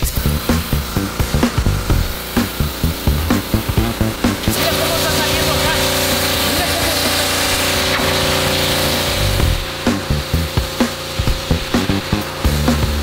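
Pressure washer running, its wand spraying a hissing water jet onto a doormat on concrete, with background music with a beat laid over it. The spray hiss and a steady machine hum are plainest in the middle; the beat stands out in the first few seconds and again near the end.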